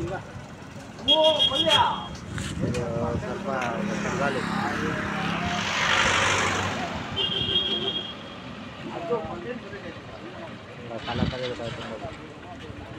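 Street traffic with a motor vehicle passing close by, rising to its loudest about six seconds in and then fading. Voices of people talking nearby come and go, and a short high tone sounds twice.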